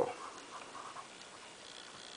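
Faint rubbing of a bare hand wiping marker off a whiteboard.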